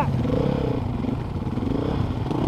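Dirt bike engines running at low revs, with a couple of light, wavering throttle blips as the bikes pick their way through deep mud.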